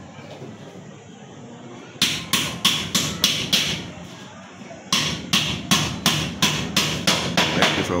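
Hammer blows in two quick, even runs of about three a second: roughly six strikes starting about two seconds in, then after a short pause about ten more, as nails are driven at the top of the wall where the ceiling's wall angle runs.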